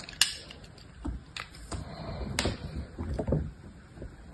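Dried soap being cut, scraped and snapped with a snap-off utility knife blade: a sharp crack just after the start, a few more crisp clicks, then a run of crunchy scraping through the middle.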